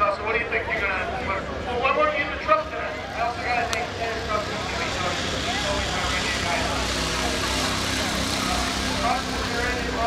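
Voices talking for the first few seconds, then a tow truck driving past: a steady engine hum with road noise that swells through the second half.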